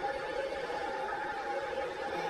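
A steady room hum with two faint held tones, unchanging throughout.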